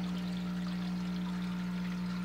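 Aquarium water trickling and bubbling steadily, over a constant low hum from the tank's pump.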